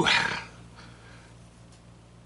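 A man's short, breathy huff of air out through the mouth, the kind made over a mouthful of food that is too hot.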